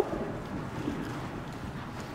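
Steady soft rushing noise, like wind on the microphone, with no distinct hoofbeats standing out.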